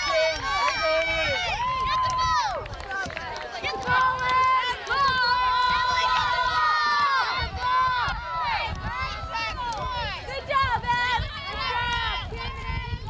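Overlapping shouts and calls from high voices across a field hockey game, including several long held yells around the middle, over a low rumble.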